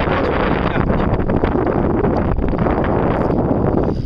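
Wind buffeting the camera's microphone: a loud, steady rushing noise with no clear tone, easing off right at the end.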